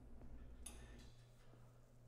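Near silence: room tone with a faint low steady hum.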